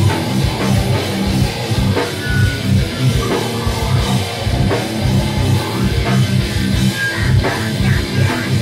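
Metalcore band playing live: heavy distorted electric guitars over a drum kit, with rapid repeated low pulses in the riff.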